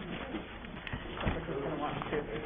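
Indistinct low murmur of people talking quietly, with a light knock a little over a second in.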